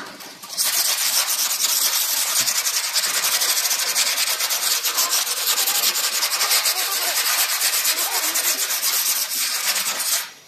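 Sandpaper rubbed by hand over the painted steel top of an old Godrej almirah in quick back-and-forth strokes, a continuous loud scratching that starts about half a second in. This is the abrading of old flaking paint to prepare the metal for repainting.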